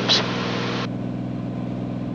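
Steady drone of a Cirrus SR22T's turbocharged six-cylinder engine and propeller at reduced approach power, heard inside the cockpit. A short hiss from the open intercom cuts off about a second in.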